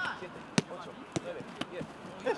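A football being kicked: three sharp thuds of boot on ball, roughly half a second apart, the first the loudest. Players' voices are faintly heard behind them.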